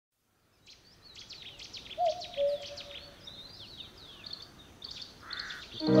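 Small birds chirping and singing in quick, downward-sweeping notes, with a louder, lower two-note call about two seconds in. Just before the end a sustained music chord comes in.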